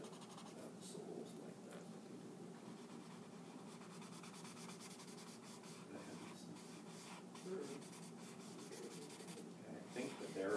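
Paper blending stump rubbing over pencil shading on sketchbook paper: faint, repeated scratchy strokes as the graphite is smoothed and blended.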